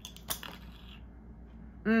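A few small clicks as the plastic lid of a lip sleeping mask jar is handled and opened, then a quiet stretch while the jar is lifted to be smelled.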